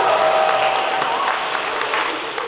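Audience applauding, with clapping and scattered cheering voices, which fade toward the end.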